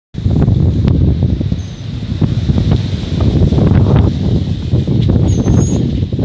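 Hurricane-force wind gusting hard onto the microphone: a loud, deep rumbling buffet that swells and dips.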